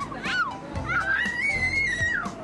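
A young child crying out: a short cry, then a long, high-pitched wail that rises, holds for about a second and falls away near the end.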